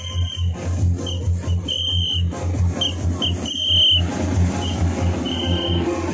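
Music played loud over a parade sound system: a steady, fast, heavy bass beat with short high-pitched tones repeating above it.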